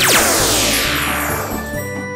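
A magic spell sound effect: a fast falling glissando of bright, shimmering chime-like tones at the start, trailing away over about a second and a half, over steady background music.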